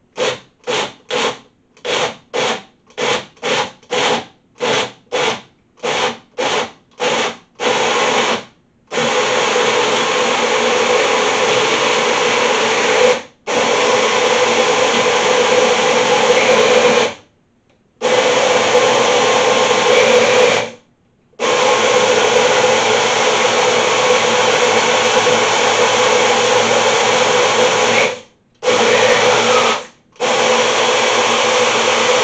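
Magic Bullet personal blender pulsed in a quick series of short bursts for about the first eight seconds. It then runs in long stretches broken by a few brief stops, blending chunks of thawed mango in water into a smoothie.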